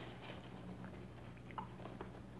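Faint, scattered crinkles of a plastic snack bag as a hand rummages inside it, over a low steady hum.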